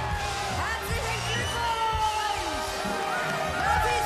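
Upbeat music playing with a steady low beat, over people cheering and whooping in celebration of a contest winner.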